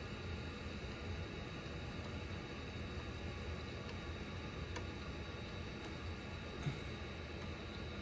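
Steady low hum and faint hiss, with a couple of faint clicks in the second half from a pen stylus tapping the Compaq Concerto's screen as letters are written.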